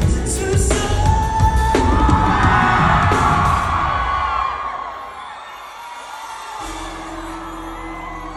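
Live band recorded from the crowd, with drums and electric guitar, and the audience screaming and whooping along. The band drops out about five seconds in, the crowd keeps cheering, and a low steady note is held near the end.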